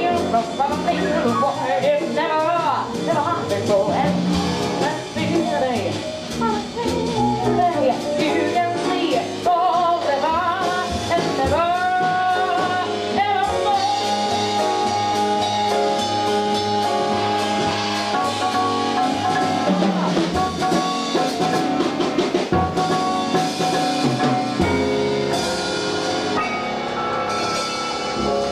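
Live jazz with a female singer backed by piano, vibraphone, bass and drums. Her melody wavers, then she holds one long note for several seconds around the middle.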